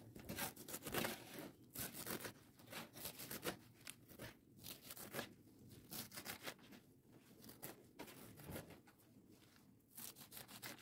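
Faint, irregular crackling and rustling: many small clicks and scratches in uneven clusters.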